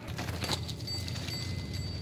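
Hand working loose potting soil in a plastic-lined container: soft scratchy rustling with a few light pats, over a steady low hum.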